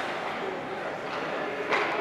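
Ice rink game ambience: indistinct spectator voices over a steady hiss, with one sharp knock about three quarters of the way through.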